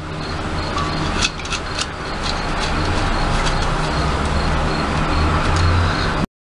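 Steady rushing noise with a low rumble that grows louder toward the end, over a few small metallic clicks and taps as an RCA jack's nut and washer are tightened onto the strobe light's metal case.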